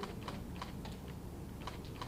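Several faint, irregularly spaced light clicks over a low steady room noise.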